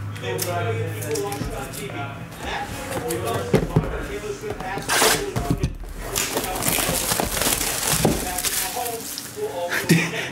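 Plastic shrink wrap crinkling and tearing as the seal of a sealed trading-card box is peeled open, under a voice talking in the background.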